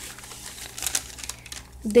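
Soft paper rustling and crinkling, with a few faint crackles, as a long store receipt is handled.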